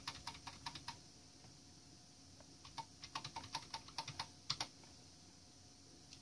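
Computer keyboard keys tapped faintly to step the text cursor down through a file: a quick run of keypresses, a pause of about two seconds, then a second, longer run of presses.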